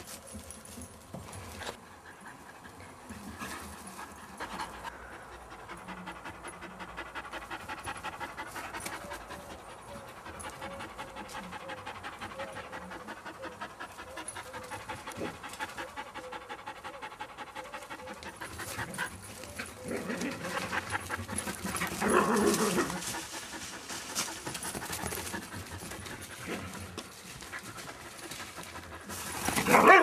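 A dog panting fast and rhythmically close by, with a louder noisy burst about two-thirds of the way through.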